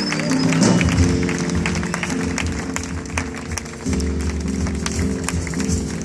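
Live jazz band playing an instrumental passage: piano chords that change about one and four seconds in, over an upright bass line, with many short sharp percussion ticks.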